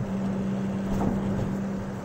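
Cabin sound of a Porsche 911 at road speed: the flat-six engine drones at a steady pitch over tyre and road noise as the car rolls over a rough bridge. There is one light knock about a second in.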